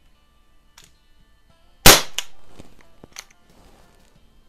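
A Crosman 1008 RepeatAir .177 CO2 pellet pistol fires one shot, a sharp crack about two seconds in, with a short ring-out. A fainter click follows just after, and another about a second later.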